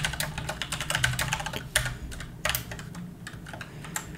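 Typing on a computer keyboard: a quick run of keystrokes through the first second and a half, then a few scattered key presses.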